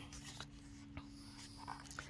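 Faint rustle and a few soft ticks of a hardcover picture book's paper page being turned by hand, over a low steady hum.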